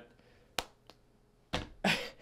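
A single sharp click, then a man's breathy exhales as he starts to laugh near the end.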